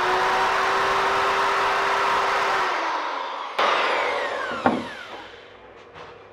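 Handheld electric router cutting a groove in a wooden cabinet panel, running at a steady pitch for about three seconds. It is then switched off and winds down with a falling whine, with a click partway through the spin-down.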